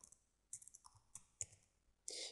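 Faint computer keyboard keystrokes: a handful of scattered clicks while a web address is typed and entered.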